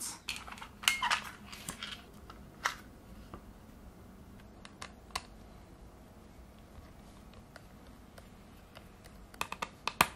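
Scattered small clicks and taps of a Torx screwdriver working the fan screws inside a 2012 MacBook Pro's opened aluminium case, with a quick run of clicks near the end.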